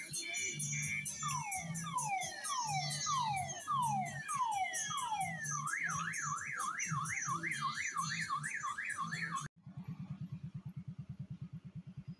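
Electronic siren-style sound effects over a steady music beat: a run of falling whistles, then a fast up-and-down warble. These stop suddenly about nine and a half seconds in and give way to a low, fast buzzing pulse.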